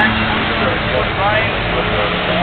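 Cars driving past on a race circuit, their engines making a steady noise, with a person's voice over it.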